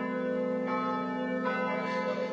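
Church bells ringing, several steady tones that keep sounding without a break.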